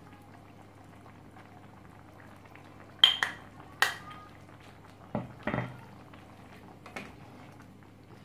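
Chicken curry simmering and bubbling quietly in a frying pan. Sharp clinks of the stirring utensil against the pan come about three and four seconds in, then a couple of duller knocks and a last light click while the curry is stirred.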